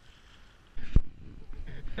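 A sudden rush of low rumble and one hard thump about a second in: the small boat's hull slapping into a wave on choppy water.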